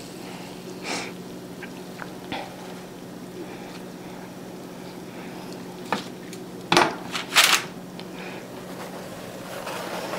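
Metal kitchen tongs picking up strips of crisp bacon and setting them down on paper towels: a few short clicks and scrapes, the loudest two close together a little past the middle, over a steady low hum.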